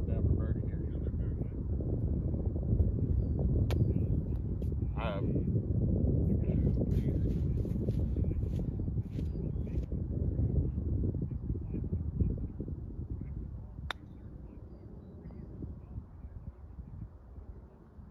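Wind buffeting the microphone in a steady low rumble that dies down over the last few seconds. About four seconds in, a golf wedge strikes the ball and turf with a sharp click on a chunked shot, and just after it a bird gives a short wavering call; another sharp click comes near the end.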